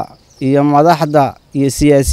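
Only speech: a man talking, with two short pauses.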